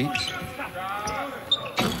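A basketball being dribbled on a hardwood court, echoing in a near-empty arena, with a sharp bounce about one and a half seconds in and faint voices from the court.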